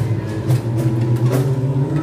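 A boys' vocal group singing a cappella into microphones: a low bass voice holds a steady drone under higher held notes, with a beat of sharp clicks every half second or so.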